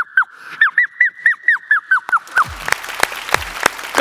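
A boy's mimicry into a microphone: a quick run of short whistle-like chirps, about four a second, each bending down in pitch at its end. About two seconds in they stop and the audience breaks into applause, with sharp claps standing out.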